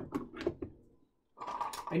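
Ryobi ONE+ lithium battery pack being pushed into its plastic battery mount, a few short clicks and knocks in the first second as it seats.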